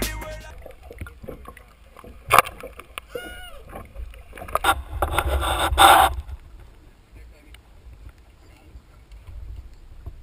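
Open-air sound on a small fishing boat at sea: a low wind-and-water rumble on the camera microphone. Over it come a sharp knock a couple of seconds in, brief shouted voices, and a loud noisy stretch from about five to six seconds in, after which only the low rumble remains.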